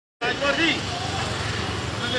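Street noise: people's voices in the first second over a steady low rumble of traffic.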